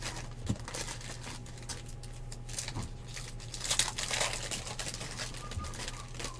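Foil trading-card pack wrappers (Panini Revolution basketball packs) being handled, crinkled and torn open by hand, in irregular rustles with a louder crackle about four seconds in. A steady low hum runs underneath.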